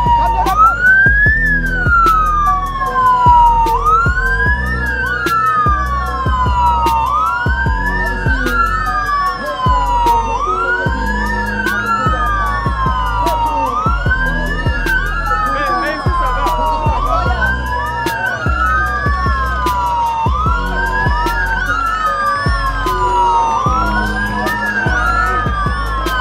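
Police escort sirens wailing, two or more out of step, each rising quickly and falling slowly about every three seconds. Music with a steady low beat plays underneath.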